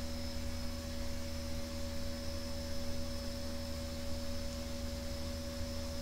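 Steady electrical hum with a constant hiss, the background noise of the recording setup, with no other sound.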